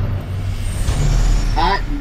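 A sudden loud, deep rumbling whoosh, an edited-in sound effect that starts with the cut to the hot-sauce title card, with a voice starting near the end.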